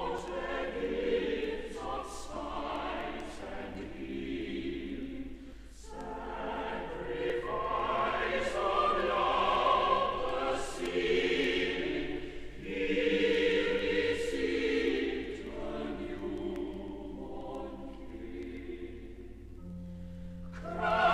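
Choir singing a Christmas carol in sustained phrases, with short breaths between phrases about six and twelve seconds in.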